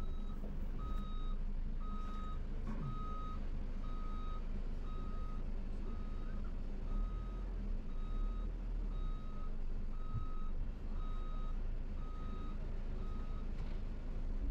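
A minibus's reversing alarm beeping at a steady, even pace while the bus backs up. It is heard from inside the cabin over the low hum of the engine.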